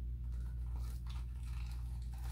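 Faint rustling and a few light clicks as a small handbag is opened with its clasp and its contents handled, over a steady low hum.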